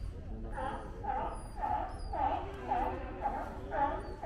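California sea lions barking: a regular run of about seven calls, roughly two a second, starting about half a second in.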